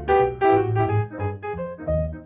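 Jazz duo of grand piano and plucked double bass playing: piano chords and runs over low bass notes.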